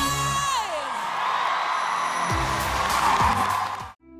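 A singer's held final note glides downward, then a studio audience cheers and applauds over the band's closing chords, growing louder before cutting off sharply at the end.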